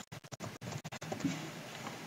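Computer keyboard being typed on: faint, irregular key clicks.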